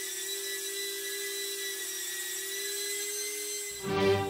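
Brushless motors spinning electric ducted fans, giving a steady, unchanging whine as they thrust to hold the balancing board upright. Music cuts in near the end.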